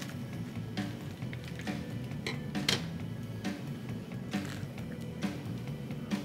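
Background music, with about six sharp, short crunches of crisp char-grilled rice paper spread through it.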